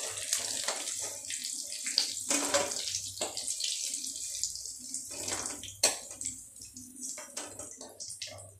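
Hot oil sizzling as pieces of elephant foot yam deep-fry in a steel kadhai, with repeated sharp clicks and scrapes of a metal slotted spoon against the pan as the fried pieces are lifted out.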